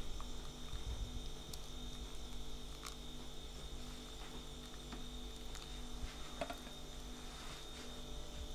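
Hot water poured in a thin stream from a thermos into one side of a yerba mate gourd, faint against a steady electrical hum with a thin high whine, with a few soft ticks.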